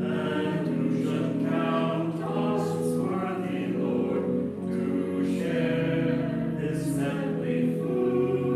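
A small group of voices singing a hymn together in slow, held notes.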